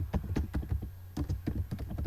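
Computer keyboard typing: a quick, irregular run of keystrokes in two bursts with a short pause between them, as a name is typed into a form field.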